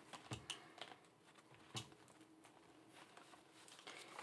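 Near silence with a few faint taps and rustles of paper banknotes being handled, mostly in the first two seconds, the loudest just under two seconds in.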